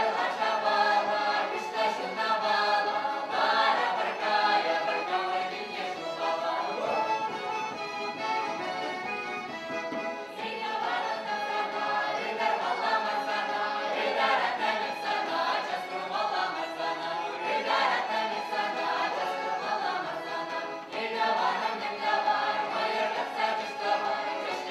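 Mixed choir of men's and women's voices singing a Chuvash folk song together, accompanied by a fiddle. The singing is continuous, with phrases swelling and easing.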